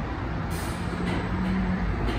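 Empty roller coaster train rolling slowly into its station, with a steady low hum and a sharp air hiss about half a second in, followed by a few fainter hisses from the pneumatic brakes.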